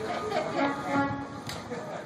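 Indistinct voices of people talking near the microphone, with one sharp click about one and a half seconds in.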